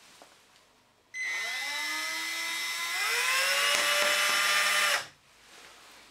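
Cordless drill running slowly in reverse, turning a micro screw-extractor bit in a stripped phone-case screw. Its motor whine starts about a second in, rises in pitch, steps up again a couple of seconds later, then cuts off suddenly near the end as the screw comes out.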